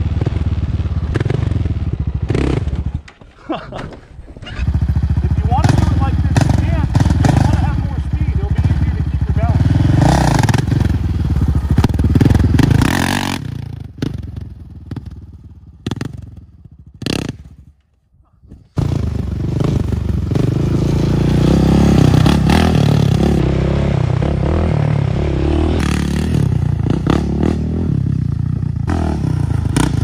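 Sport ATV engine revving hard and easing off under the throttle during wheelie runs. The sound drops away briefly about three seconds in and again for several seconds past the middle, then picks up again.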